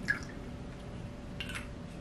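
Liquid poured from a bottle into a small shot glass: a quiet trickle and drip, with a short soft sound about a second and a half in.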